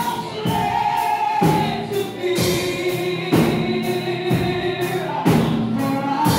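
Congregational gospel singing, a woman leading on a microphone with a group of voices joining, over a steady beat that lands about once a second.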